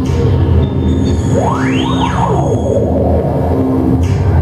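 Live industrial electronic music from synthesizers: a dense, layered low drone, with a high whine that sweeps up and back down about halfway through.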